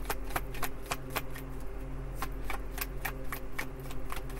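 A deck of tarot cards being shuffled by hand: irregular light clicks as the cards slide and tap together, about four a second, with a short pause near the middle.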